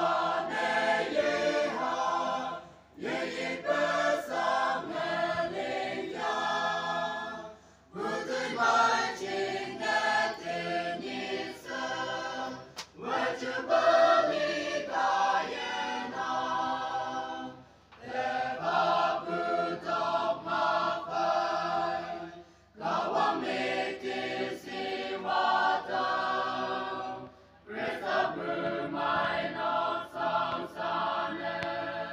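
Choir singing, in phrases of about five seconds, each separated by a brief pause.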